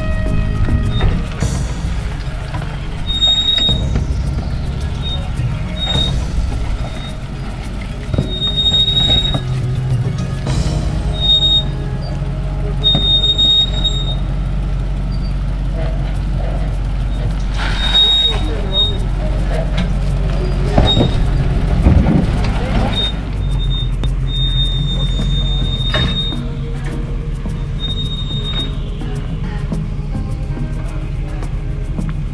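Land Rover Discovery Series I crawling slowly over boulders, its engine running low and steady, with short high-pitched squeals over and over and scattered knocks as the truck works down the rocks.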